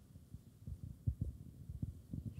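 Handling noise from a handheld microphone being gripped and moved: soft, irregular low thumps and rubs.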